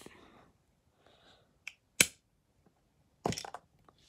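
LEGO plastic pieces clicking and knocking as the vending machine is worked. There is one sharp click about two seconds in and a brief cluster of knocks near the end, as a white round 1x1 brick is pushed out and drops.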